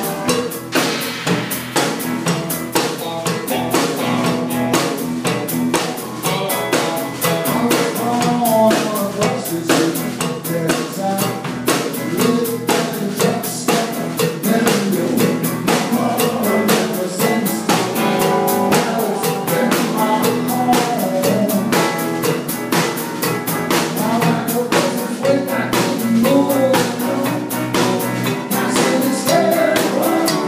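A live band plays an instrumental passage: a drum kit keeps a steady, busy beat with rimshots on the snare under an electric guitar line and bass.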